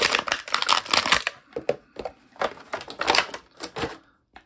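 Clear plastic blister bubble crackling and clicking as an action figure is worked out of it by hand: dense crackles for about the first second, then scattered sharp clicks.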